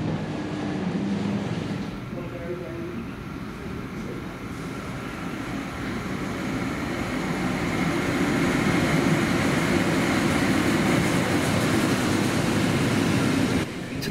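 NSW TrainLink XPT diesel passenger train pulling in alongside a station platform. The rumble of the power car and the rolling carriages builds over a few seconds, holds steady and loud, then cuts off suddenly near the end.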